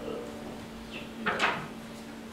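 A short knock and rustle of something being handled and set down on a wooden pulpit, twice in quick succession, about a second and a half in, over a low steady hum.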